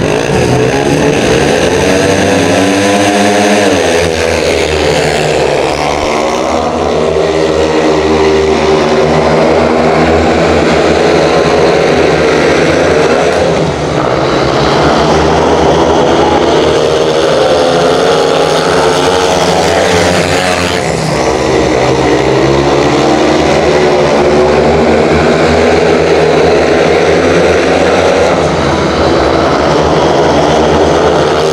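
Four speedway bikes, each a 500cc single-cylinder methanol-burning engine, racing a heat: their pitch climbs hard as they leave the start, then rises and falls as they go through the bends. Loud throughout.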